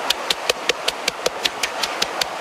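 Wooden pestle pounding fresh red chillies in a wooden mortar, quick even strokes about five a second.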